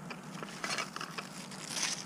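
Clear plastic packet crinkling faintly with small clicks as it is handled.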